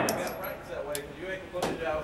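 Echo of a Beretta pistol shot dying away in an indoor range, with talking over it and a quieter sharp crack about one and a half seconds in.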